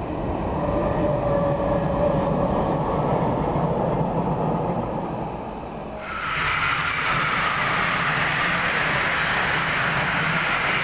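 Passenger train running past on an electrified line: a steady rumble that swells and then eases off. After an abrupt jump it becomes a louder, steady rushing noise from a train passing close by.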